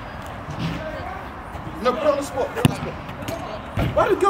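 A football kicked on an artificial-turf pitch: one sharp thump about two and a half seconds in, then a second, deeper thud just before the end.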